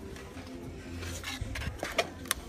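Cardboard box of stemless wine glasses being slid and lifted off a glass shelf: rubbing and small clicks, with a sharp knock near the end, over faint background music.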